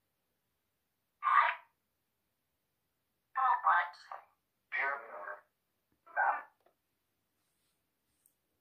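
Necrophonic ghost-box app playing through a phone speaker: about four short, chopped bursts of garbled voice-like sound with dead silence between them. The uploader takes them for spirit voices saying "good vibes here".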